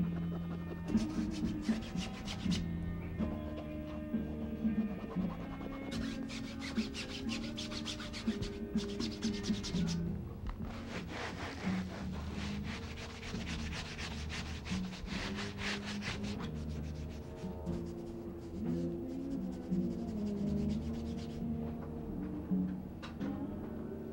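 A hand rubbing dry pigment onto a canvas in quick repeated scratchy strokes, in stretches about a second in, around the middle and again until about two-thirds through. Recorded music with a bass line plays under it.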